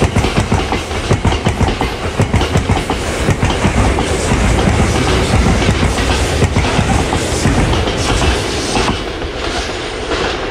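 Freight train tank wagons rolling past at close range, their wheels clattering over the rail joints in quick, irregular beats over a steady rumble. The sound eases off a little in the last second as the tail of the train goes by.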